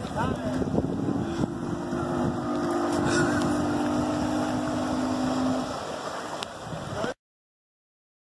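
Motorboat engine running steadily across the water as the boat circles, a low steady hum. The sound cuts off abruptly about seven seconds in.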